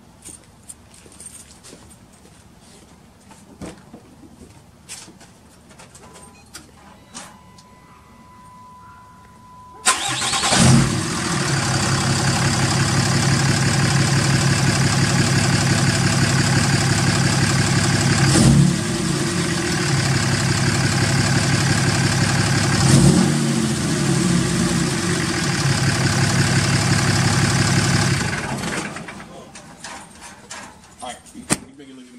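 A 6.7-litre Cummins inline-six turbodiesel in a Ram pickup, freshly fitted with an aftermarket intake manifold and a grid heater delete, starts about ten seconds in and runs at idle with two brief revs, then shuts off near the end.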